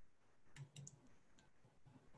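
Near silence with a few faint computer clicks, about half a second to one and a half seconds in, while slides are being shared on screen.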